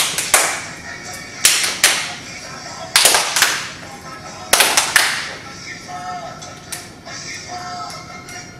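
A song with singing plays while sharp hand claps come in pairs and threes, in time with the music, over the first five seconds; the claps are the loudest sounds.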